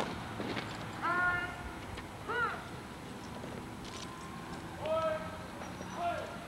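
Shouted parade drill commands, three drawn-out calls: about a second in, at two and a half seconds, and near the five-second mark, with a few light clicks between them.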